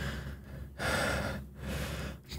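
A man breathing out hard in three short, breathy puffs, with no voice in them.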